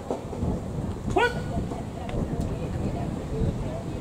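Low rumble of wind buffeting the microphone on an open ballfield, with one short rising shout from a person about a second in and faint voices afterwards.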